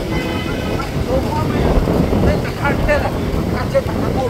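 A person talking in Vietnamese over a steady low rumble of surf and wind on the microphone.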